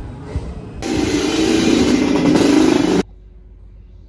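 Loud, steady motor-vehicle engine and road noise that starts suddenly about a second in and cuts off abruptly about three seconds in.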